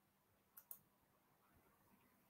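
Two faint clicks in quick succession about half a second in, a computer mouse being clicked; otherwise near silence.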